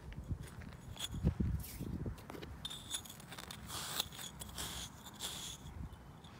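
Grooming block (Slick 'n Easy) scraping in repeated strokes over a horse's shedding winter coat. A few low thumps come about a second in.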